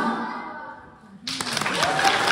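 Dance music fading out over the first second, then audience applause breaking out suddenly about a second and a quarter in, with voices cheering over it.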